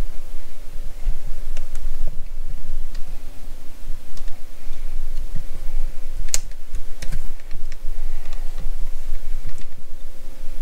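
Irregular light clicks and taps, one sharper click about six seconds in, over a low rumble: handling noise from a camera being moved and adjusted on a kitchen counter.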